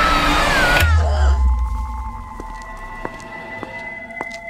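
Horror trailer sound design: a woman's wavering scream inside a loud, noisy swell that cuts off suddenly about a second in, at a deep bass hit. After it comes a quiet, sustained eerie drone of steady tones with faint ticks.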